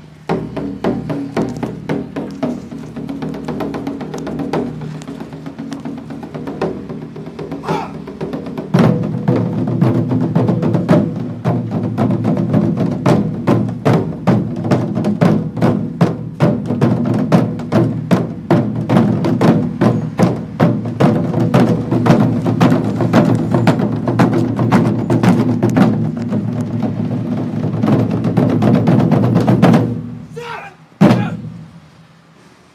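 Taiko drum ensemble playing a fast, dense rhythm of stick strikes on the drumheads, growing louder about nine seconds in and stopping at the very end.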